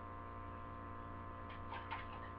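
Steady low electrical mains hum with a buzzy edge, unchanging throughout.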